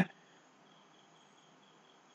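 Faint room tone between narrated sentences: a steady, thin, high-pitched hiss with no other events.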